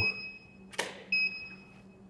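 A camera shutter clicks as the Profoto D2 studio flash fires. About a third of a second later comes the flash's short, high, steady ready beep as it recycles. One beep sounds at the start, the click comes a bit under a second in, and a second beep follows just after a second.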